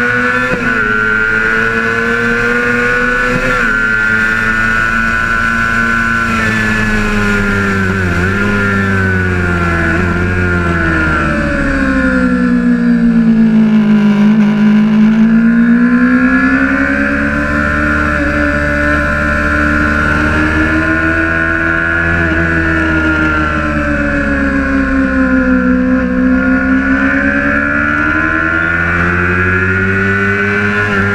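Sport motorcycle engine at racing speed on track, its pitch rising and falling as it accelerates and slows through corners. The revs sink lowest about halfway through, then climb again, with a smaller dip near the end.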